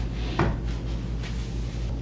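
A wooden dresser drawer pushed shut, closing with a sharp knock about half a second in, followed by a softer knock of wood on wood.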